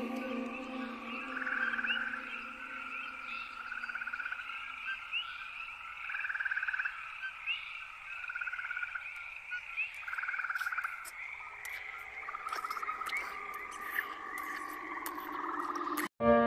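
Frogs calling in a chorus: short pulsed trills every second or two over a steady band of high chirps, with scattered clicks later on. A held low music note fades out in the first few seconds.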